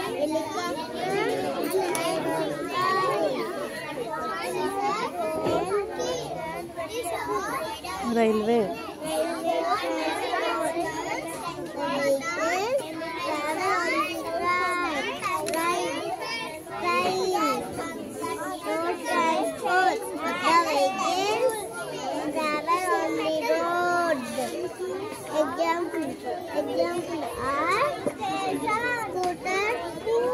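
Many children talking at once: a continuous babble of overlapping young voices.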